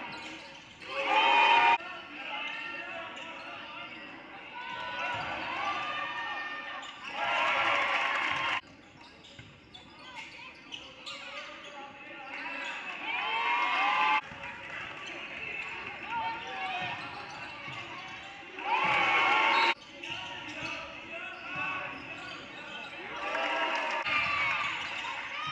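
Basketball game sound in a gymnasium: the ball bouncing on the hardwood, short squeaks from sneakers, and the voices of players and spectators echoing in the hall. Several louder stretches start and stop abruptly.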